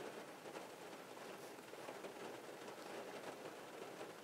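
Faint, steady background hiss: quiet room tone with no distinct sounds.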